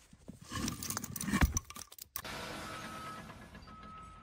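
Metallic clinking and knocking of steel plug-and-feather wedges in a splitting granite block, with one heavy thud about a second and a half in. From about two seconds in, a steady hiss with a faint high tone.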